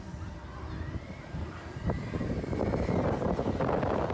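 Wind rushing over a phone's microphone while riding a spinning chain swing ride: a low, rumbling rush that dips for the first couple of seconds and swells again after about two seconds, with voices faint underneath.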